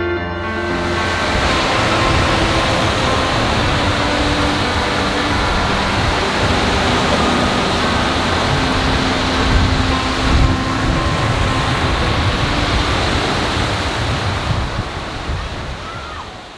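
Surf breaking on a sand beach: a steady rush of waves, with some wind, that fades out near the end.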